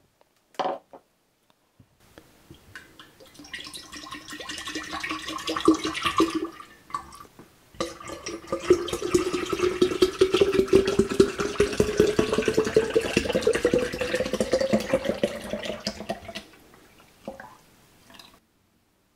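Tomato juice being poured from plastic bottles into a glass pitcher, in two pours, the second one longer. As the pitcher fills during the second pour, the pitch of the splashing liquid rises steadily.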